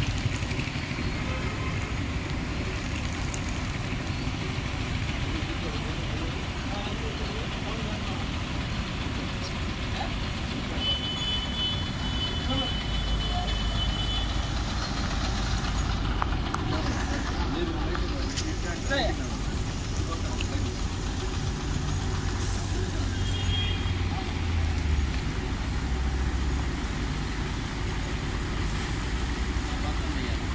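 Buses running past on a rain-soaked road: engine rumble and tyre hiss over steady rain, the rumble heavier from about the middle on, with a brief high tone just before it.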